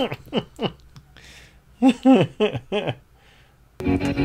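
A person says a brief 'oh' and then gives a quick run of short laughs, with quiet between. Music with guitar starts suddenly just before the end.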